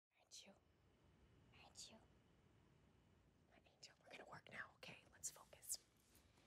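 Faint whispering: a few short, breathy, hissing syllables, a couple near the start and a quicker run in the second half.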